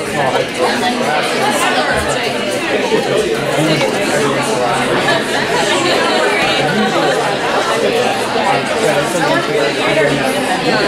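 Many students talking at once, a steady babble of overlapping voices with no single speaker standing out.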